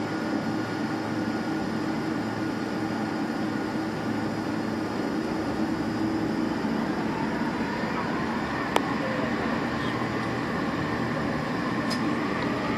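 Steady cabin drone of a Boeing 747 taxiing on the ground, its engines at low power, with a faint high whine over the hum. A single sharp click about three-quarters of the way through.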